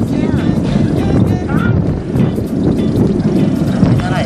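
Wind buffeting the microphone, a loud uneven rumble, with a couple of brief faint voices.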